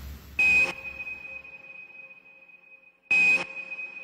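Drum and bass DJ mix at a quiet transition: the previous track's bass fades away, then two short electronic sonar-like pings about three seconds apart, each leaving a high ringing tone that slowly dies away.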